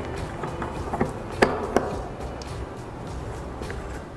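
Soft background music with a few sharp metallic clicks, the two loudest about a second and a half in, from an 8mm Allen key working in the crank bolt as a spindle is threaded into a bicycle crank arm.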